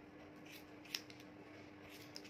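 Hair-cutting scissors snipping through a section of hair held against a comb: a few short, sharp snips, the loudest about a second in, over a faint steady hum.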